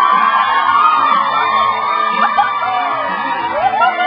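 Recorded dance music played for a children's dance, with a melody that slides up and down in pitch, carrying through a large gym with some crowd noise underneath.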